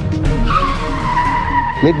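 A car's tyres screeching in one long squeal that starts sharply about half a second in and sinks slightly in pitch, with a low boom at its start, over film-trailer music.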